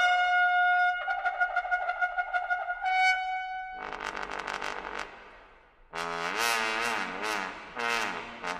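Solo trombone holding a very high note, then pulsing on it in quick repeated attacks. About four seconds in, a fuller brass chord takes over and fades almost to nothing. At six seconds several brass voices come in loudly with wavering, sliding pitches.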